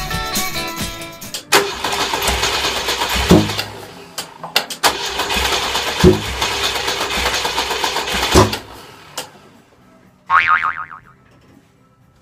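Volvo Amazon engine cranking on the starter twice without catching, over background music. This follows a new distributor cap, rotor, leads and a HotSpark electronic ignition, and the owner suspects the wrong HotSpark. Near the end, a short falling-pitch 'boing' sound effect.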